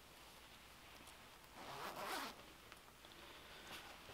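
Front zipper of a fleece hunting jacket being pulled open, a faint rasp lasting under a second about halfway through.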